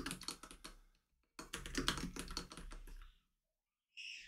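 Quiet typing on a computer keyboard: two runs of quick keystrokes, the first trailing off about a second in, the second running from just under a second and a half in to a little past three seconds, with dead silence between and after.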